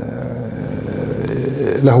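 A man's drawn-out, rough hesitation sound, held steady for nearly two seconds in a pause between words, before his speech resumes near the end.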